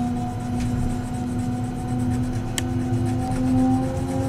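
Electric train's traction motors whining from inside the carriage, several steady tones whose pitch rises slowly as the train picks up speed, over a low rumble of the running gear. One sharp click about two and a half seconds in.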